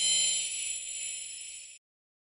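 Logo-sting sound effect: a bright, high-pitched shimmering hiss with steady ringing tones in it. It fades over about a second and a half and then cuts off suddenly.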